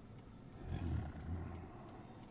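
A vehicle's low engine rumble that swells about half a second in and eases off near the end.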